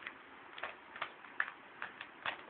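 Rubik's cube being turned by hand: a quick run of sharp plastic clicks, about five in two seconds, as the layers are twisted.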